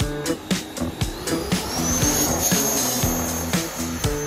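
Funk music with a steady beat, and under it the 90 mm electric ducted fan of a Freewing T-45 RC jet: a rush of air with a high whine that climbs in pitch about a second in and then holds steady, as the fan spools up to high power.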